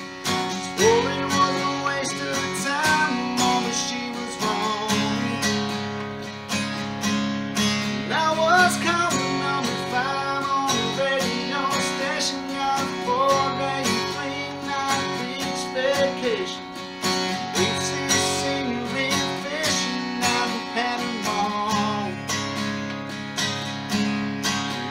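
Takamine acoustic guitar strummed in a steady rhythm, with a man singing over it.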